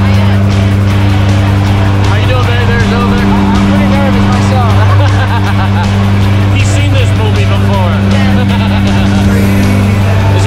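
Steady, loud drone of a skydiving plane's propeller engines, heard inside the cabin during the climb.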